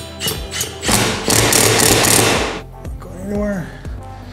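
Cordless drill driving a screw with a washer through a Unistrut channel into the ceiling, running hard for about a second and a half from about a second in, over background music with a steady beat.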